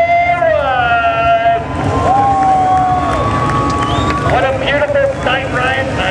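Dirt late model race cars' V8 engines running at high revs, their pitch rising and falling as the cars go by. From about four seconds in, the crowd cheers and shouts over them.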